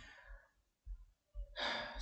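A man's breathing close to the microphone: a short breath at the start and an inhale building near the end.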